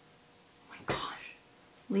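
Quiet room tone, broken a little under a second in by one short, breathy vocal sound from a woman: a brief exhale or sound of effort as she gropes for a word.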